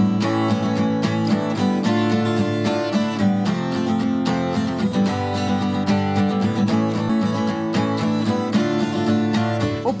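Background music led by a plucked acoustic guitar, a steady stream of quick notes.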